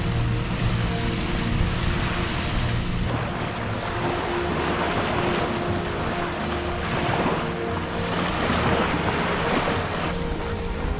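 Small waves breaking and washing up a sandy shore, with wind on the microphone. Soft background music with held notes sits underneath.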